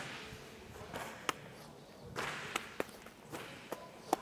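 A few light, sharp slaps of boxing gloves meeting hands during a slow punch-and-counter drill, with soft swishes of movement between them.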